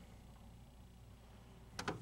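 Near silence: quiet room tone with a faint steady low hum.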